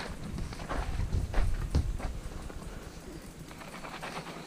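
Footsteps and irregular knocks on a wooden ramp as mountain bikes are walked and pushed up the plywood boards.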